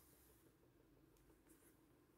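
Near silence, with faint rustling and a few small ticks of embroidery thread being drawn through fabric with a needle.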